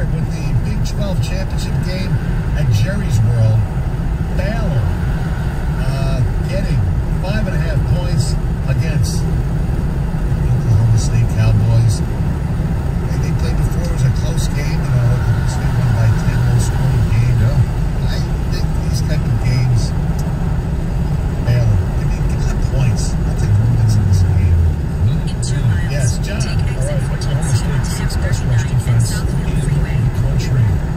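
Steady low road and engine rumble heard inside a moving car's cabin at highway speed, with faint talk underneath.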